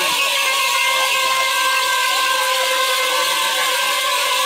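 A Hamer women's ceremonial dance: many voices singing and chanting together over steady held drone tones, with a bright, continuous jingling hiss.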